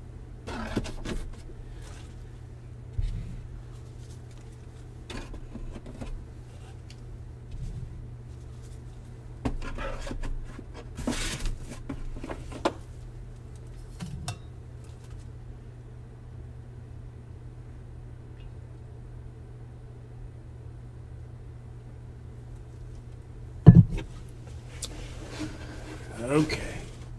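Trading cards and their plastic sleeves being gathered up and set down on a table, with scattered short rustles and taps over a steady low hum. A single sharp knock near the end is the loudest sound.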